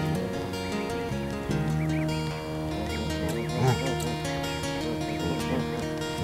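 Soft background music with steady held notes. Short, faint peeping calls are scattered through it, from newly hatched Canada goose goslings.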